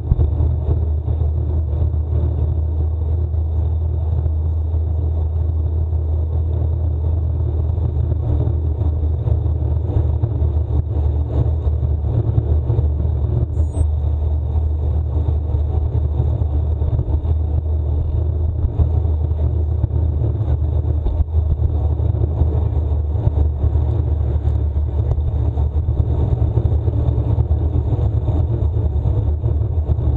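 Steady, deep wind rumble on the microphone of a camera riding on a road bike at about 20–24 km/h, with tyre noise on asphalt mixed in.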